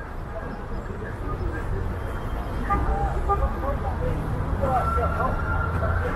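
Street traffic noise, a low rumble of passing cars and buses that swells about halfway through, mixed with the chatter of passers-by. A thin steady whine sounds briefly near the end.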